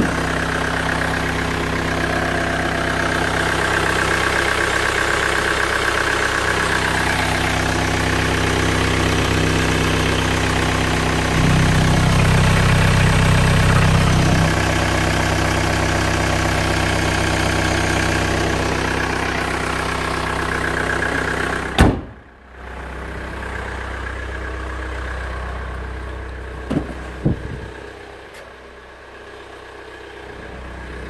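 Hyundai Santa Fe engine idling steadily, heard up close in the open engine bay, with a few seconds of louder running about halfway through. About 22 seconds in there is a single loud bang, after which the engine sounds quieter and more distant, with a couple of small clicks.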